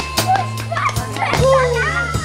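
Live rock trio of electric guitar, bass guitar and drum kit playing, with a steady bass line and drum hits. About halfway through, high voices call out over the music in gliding, falling pitches.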